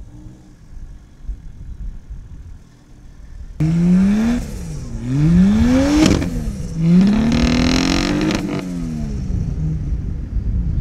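Turbocharged Barra straight-six engine of a 40-series Landcruiser idling low, then revved hard about a third of the way in, in three rising surges that drop back between, as the wheels spin and throw sand trying to climb a soft sand dune with the front locker engaged. The revs ease near the end.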